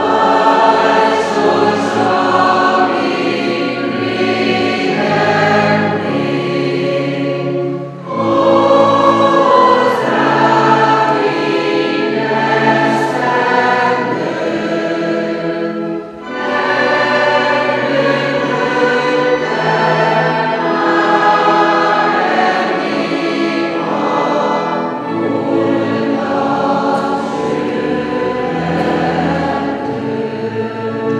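A small church choir singing a hymn with pipe organ accompaniment, the voices held over steady low organ notes. The singing comes in long phrases, with brief pauses about 8 and 16 seconds in.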